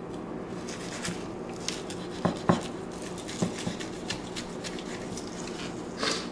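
A knife working along the bones of a raw turkey, with hands pulling the wet meat away: quiet handling sounds with a few soft clicks, two close together about two and a half seconds in, over a faint steady hum.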